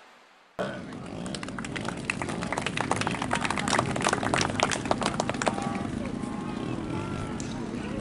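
Outdoor crowd ambience: distant voices over a steady wind-like rush, with a fast, irregular run of sharp clicks through the middle.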